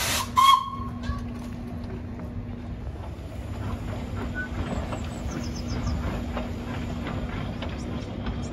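Small narrow-gauge steam locomotive letting off steam. A loud, brief burst of hiss about half a second in, then a steady hiss over a low, even hum.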